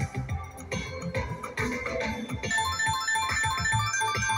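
Ultimate Fire Link slot machine playing its electronic bonus music and reel-spin sounds during free games. About halfway through, a quick run of short repeated chiming notes starts as a win is counted up.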